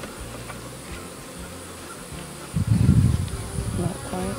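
Honey bees buzzing around an open hive, a steady low hum. About two and a half seconds in, a louder, rough low rush lasts a little over a second.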